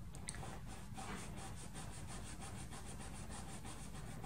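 Quiet room tone: hands pressing down on a closed paper card, with a soft tick just after the start and faint rubbing. Behind it runs a steady low hiss with a fast, even pulsing.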